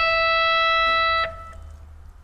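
A single electric guitar note bent up a semitone and held at the top of the bend, a steady ringing tone that stops about a second and a quarter in.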